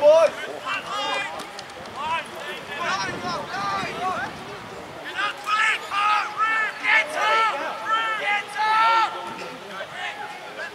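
Several voices shouting and calling out, overlapping one another, across a rugby pitch during play, with a loud shout right at the start and a busier run of calls in the second half.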